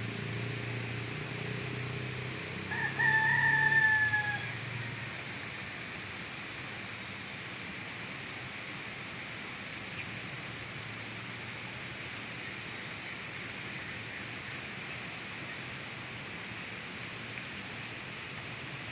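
A rooster crowing once, about three seconds in, over a steady background hiss.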